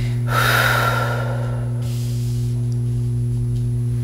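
A steady low electrical hum throughout, with a breathy exhale from a woman starting about a third of a second in and lasting over a second.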